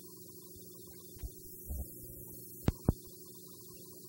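Faint, steady electrical mains hum on the audio track of an old TV recording, with a few soft thumps and then two sharp clicks in quick succession a little before the three-second mark.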